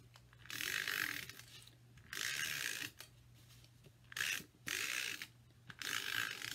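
Stampin' Up! Snail adhesive tape runner drawn across the back of a card-stock mat in about five short strokes, each a rasping run of its roller mechanism lasting under a second.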